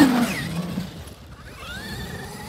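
Traxxas XRT RC monster truck on sand-paddle tyres accelerating away, its electric motor whining and the paddles spraying sand. The noise fades within the first second as the truck pulls away, and a thin rising whine comes back near the end as it speeds up again.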